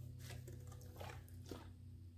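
A few faint soft clicks and rustles of hands handling items on a craft table, over a steady low hum.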